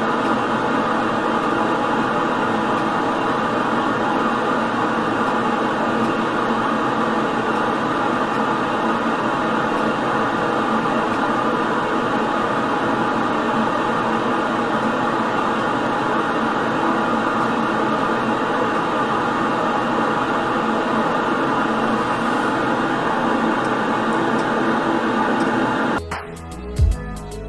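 Steady, loud hiss of analogue TV static from a receiver left on a dead channel: the sign that the BBC Two analogue signal has been switched off.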